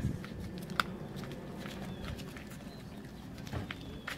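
Footsteps of several people in flip-flops and bare feet walking on wet asphalt: scattered light slaps and clicks, one sharper click about a second in, over a low steady hum.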